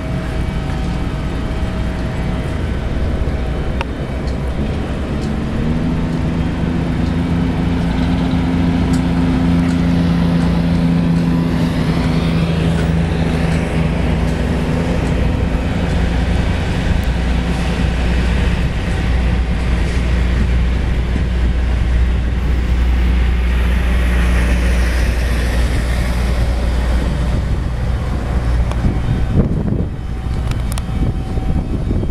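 Steady low wind rumble on the microphone of a moving bicycle, with a motor vehicle's engine humming from about five seconds in until it fades out before twenty seconds.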